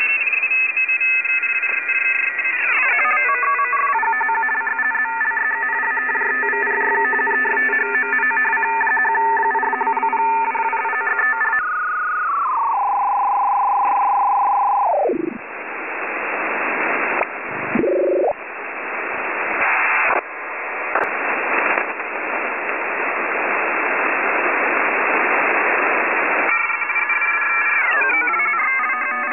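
Electronic tones and radio static with the thin sound of a radio or phone line. Several steady tones hold through the first dozen seconds, broken by downward pitch glides. About 12 s in a tone steps down and then drops away steeply, a hiss of static with brief dropouts takes over, and near the end the tones come back.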